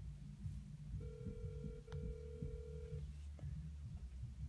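Telephone ringback tone of an outgoing call playing from a smartphone's speaker: one steady ring about two seconds long, starting about a second in, with a faint click partway through.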